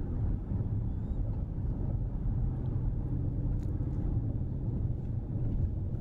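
Steady low rumble of a car being driven slowly, heard from inside the cabin: engine and tyre noise on the road.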